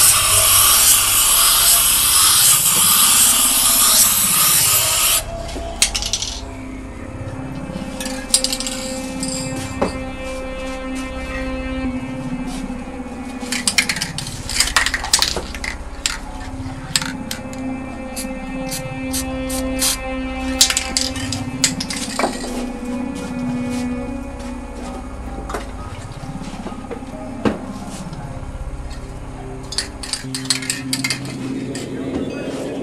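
Aerosol spray can hissing steadily as clear coat is sprayed over a painting, cutting off suddenly about five seconds in. Quieter background music follows, with scattered clicks and clinks.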